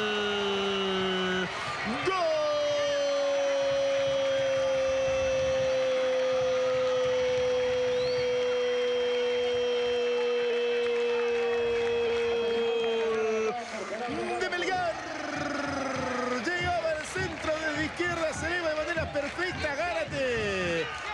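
A football commentator's drawn-out goal cry: a short shout falling in pitch, then one long held shout of about eleven seconds that slowly sinks in pitch. It breaks into fast excited talk for the rest of the time.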